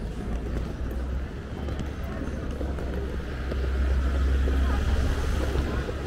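Busy street ambience with passers-by talking, under a deep low rumble that grows louder in the second half and fades just before the end.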